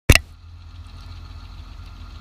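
A sharp knock right at the start, then a pickup truck's engine idling with a steady low rumble.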